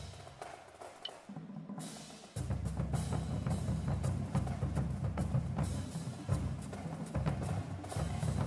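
High school marching drumline playing a cadence on snare drums and bass drums, a dense run of strokes. It is softer for about the first two seconds, then comes in louder and fuller about two and a half seconds in.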